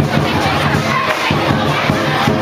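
Lion dance percussion, drum and cymbal strikes at an uneven beat, over loud crowd noise.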